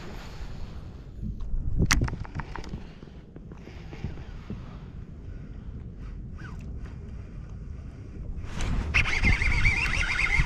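Baitcasting reel being worked through a cast and retrieve, under a steady low rumble of wind and water on the microphone. A sharp click comes about two seconds in, and a wavering high whir starts near the end.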